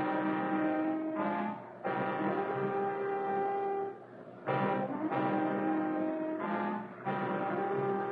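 Dramatic orchestral bridge music led by brass: repeated phrases of about two seconds, each a short accented chord followed by a long held note, with a brief drop about four seconds in.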